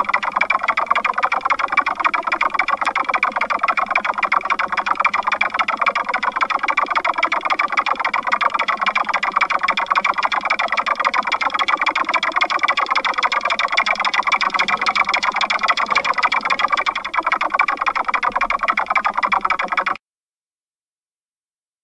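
Experimental noise music: a harsh, heavily distorted, effects-processed drone held at a steady loud level, with a fast buzzing flutter running through it. It cuts off suddenly at the end.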